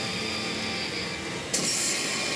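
CR Hokuto no Ken 5 Hasha pachinko machine playing its music and effects over the parlor din. About one and a half seconds in, a sudden louder hissing burst comes in as the machine's screen flares red during its RUSH mode.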